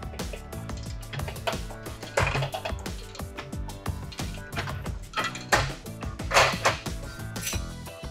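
A string of light metallic clinks and knocks, a few louder than the rest, as a steel plate and square punch are handled in a hand-lever arbor press, over background music.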